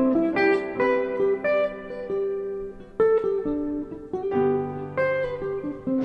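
Instrumental break in a slow ballad accompaniment: single notes and chords struck and left ringing out, with lower bass notes joining about four seconds in.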